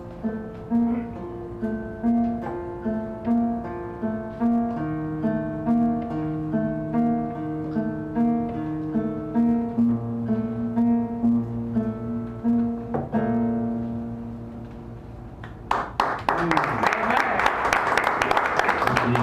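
Acoustic guitar fingerpicked solo, a melody over a note repeated about twice a second, slowing into a last ringing chord. About two seconds before the end, applause breaks out.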